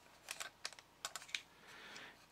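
Faint, irregular light clicks and taps in a few small clusters, from fingers handling the bare metal-and-plastic chassis and mechanism of a vintage remote-control toy car.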